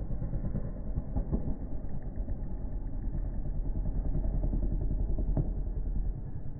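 Freestyle motocross dirt bike engine running and revving as the rider jumps off the ramp, over a steady low rumble.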